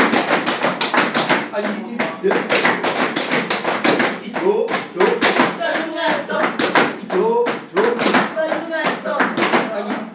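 Gumboot dance: several dancers slapping their rubber wellington boots with their hands and stamping on a tiled floor, a fast, steady rhythm of sharp slaps, with voices calling along.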